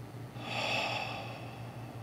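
A man drawing one deep breath, about a second long.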